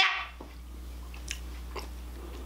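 Faint, sparse crunches of someone chewing a crunchy snack, over a steady low hum in a quiet room.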